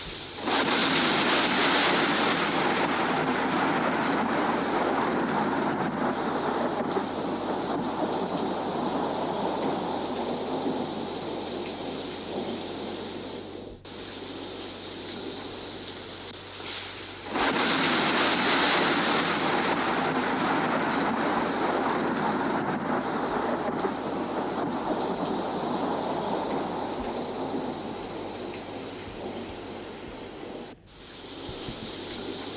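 Thunderstorm sound effect of rushing rain and thunder. It starts abruptly, fades slowly, breaks off about halfway through, and then plays again from the start a few seconds later.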